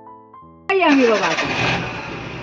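Soft piano music, cut off less than a second in by a sudden loud sound: a car engine starting, catching with a rev that falls away over most of a second.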